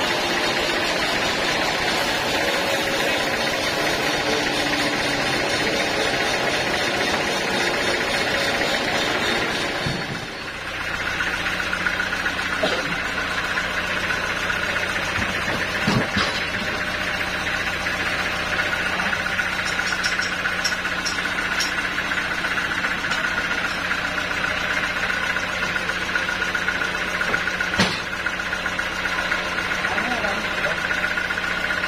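Band sawmill machinery running steadily, a low drone under a high whine. The sound is rougher and noisier for the first third, dips briefly, then settles into the steady whine. Two sharp knocks come halfway through and near the end as the teak log is handled on the carriage.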